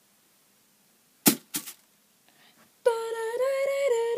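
Two short sharp clicks, then a boy humming a long held note that wavers and steps slightly higher in pitch.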